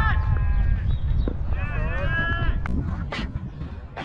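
Two long, drawn-out shouted calls from players on the field, the second starting about a second and a half in, over a low rumble of wind on the helmet camera's microphone. A couple of sharp knocks follow near the end.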